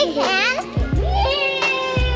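Young children's high-pitched voices, with long gliding and squealing tones, over background music with a steady bass line.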